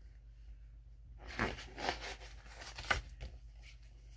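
Stiff card pages of a picture book being turned by hand: a few short papery swishes, with a sharper flap near the end as the page lands.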